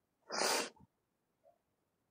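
A single short, sharp burst of breath from a person close to the microphone, about half a second long. A faint small sound follows about a second later.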